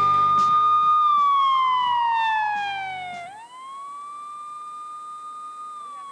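Closing of a TV show's title sting: a held, siren-like electronic tone that slides steadily down in pitch for about two seconds, sweeps quickly back up and holds, while the backing music beneath it ends.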